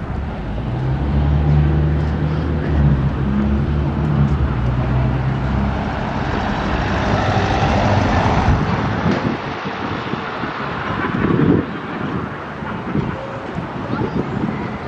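A camper van's engine running close by with a steady low hum, then the van driving past with a swell of tyre and road noise about eight seconds in. A short louder bump comes near the end.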